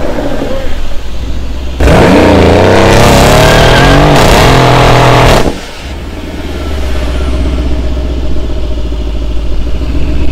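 Modified Mercedes-AMG C63 S with downpipes and a tune, its twin-turbo V8 doing a short burnout. About two seconds in the engine jumps to high, wavering revs with the rear tyres spinning. It cuts back sharply after about four seconds and settles to a steady low rumble as the car rolls along.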